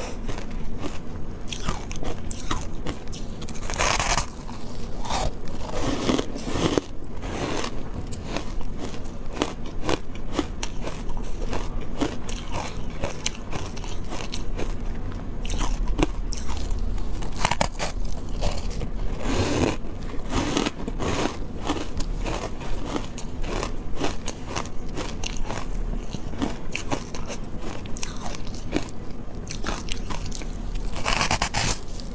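Refrozen shaved ice coated in green powder being bitten and chewed close to the microphone: a dense run of crisp crunching and crackling, with louder bites about four seconds in, around six to seven seconds, and near twenty seconds.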